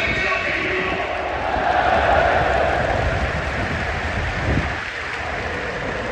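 Large stadium crowd of Urawa Reds supporters: thousands of voices blending into a steady din, dipping slightly about five seconds in.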